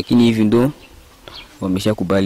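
Speech: a man talking, with a pause of about a second in the middle.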